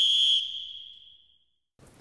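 A single high, steady whistle tone, the sound of the programme's transition sting, held for about half a second and then fading away over another second.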